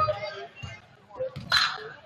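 A basketball being dribbled on a hardwood gym floor, about two bounces a second, with a short sharp shout about a second and a half in.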